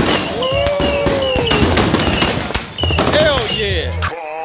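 Ground fireworks and strings of firecrackers going off in a rapid, continuous crackle of sharp bangs, with people whooping in long rising-and-falling calls over it, one about a second in and another near the end.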